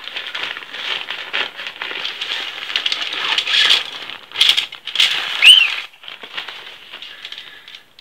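Nylon tent fabric and a pole bag rustling and crinkling as the bag is handled and the bundle of alloy tent poles is pulled out, the pole sections rattling against each other. Louder clatters come about four and a half and five seconds in, with a brief squeak just after.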